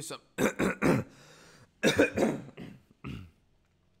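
A man coughing and clearing his throat in repeated bouts: three quick coughs in the first second, a longer bout about two seconds in, and one more near the end.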